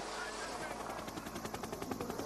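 A helicopter rotor chopping in a fast, even pulse with a hiss behind it.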